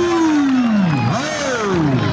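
A man's drawn-out call: one long held note slides steadily down in pitch over the first second, then gives way to short rising-and-falling calls, in the style of a kabaddi commentator calling the raid.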